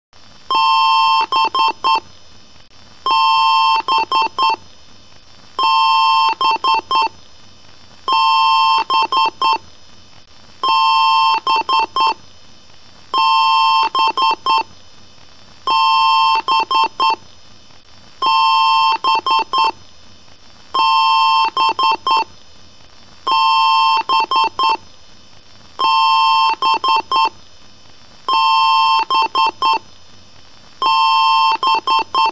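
Electronic beep pattern repeating about every two and a half seconds: one long beep, then a few quick short beeps, each sounded as a chord of several stacked pitches. It follows the long-and-short pattern of a PC BIOS power-on self-test beep code, which signals a hardware error at boot.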